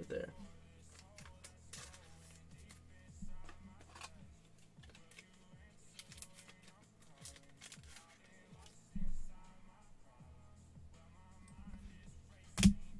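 Faint steady background music, with light clicks and rustles of trading cards and plastic card sleeves being handled. A low thump comes about nine seconds in.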